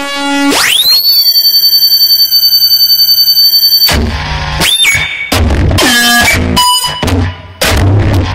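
Electronic noise music. A cluster of pitched tones sweeps up into a high, steady whine that flutters about ten times a second for roughly three seconds, then breaks off abruptly into a jumble of choppy bursts of noise and short tones.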